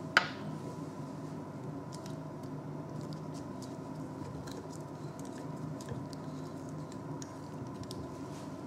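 A sharp click a fraction of a second in, then faint scattered ticks and rustles of gloved hands handling a glass burette in a wooden clamp stand, over a steady room hum.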